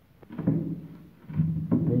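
A light knock from an MDF wall panel pressed and bumped by hand about a third of a second in. Toward the end a man's voice makes a drawn-out hesitation sound.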